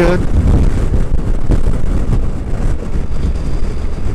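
Wind buffeting a helmet-mounted camera's microphone on a motorcycle at highway speed, a loud, steady rumble, with the bike's running and road noise under it.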